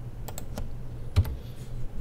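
A few scattered computer keyboard keystrokes, the loudest a little past the middle, over a steady low hum.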